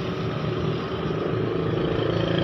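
Steady drone of an engine running in the background, a low hum under a noisy wash.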